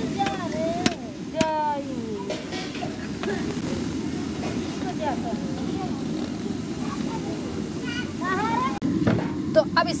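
Scattered untranscribed voices of women and children, a rising call near the start and more chatter around halfway and near the end, over a steady low rumble.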